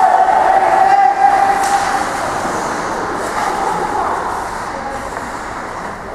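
Ice hockey play in a rink: a steady scraping hiss of skate blades on the ice, with a held voice-like call in the first two seconds.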